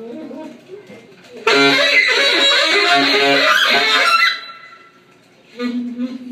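Live saxophone and drums: a loud, dense burst of playing starts about a second and a half in and breaks off after about three seconds, leaving a single tone ringing away. Quieter pitched saxophone or voice sounds come before the burst and again near the end.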